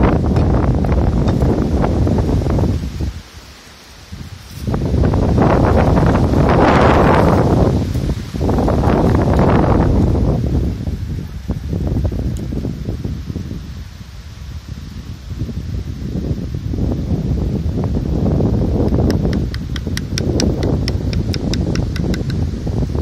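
Wind buffeting the microphone, a loud low rumble that swells and dies away in gusts, with rustling over it. Near the end a quick run of faint ticks comes through.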